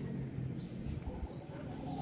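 A dove cooing in the second half, over a steady low rumble.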